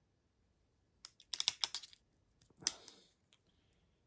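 A quick run of light, sharp plastic clicks and taps about a second in, then two more single clicks near the end, from the paintbrush and small plastic model wagon being handled at the workbench.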